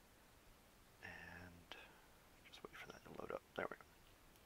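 Very quiet handling noise: a short soft hum about a second in, then a scatter of small clicks and taps from fingers tapping and handling a tablet.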